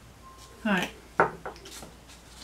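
A brief wordless vocal sound, then a sharp knock and a few lighter clicks as a plastic collar cutter is handled and set down on a cutting mat.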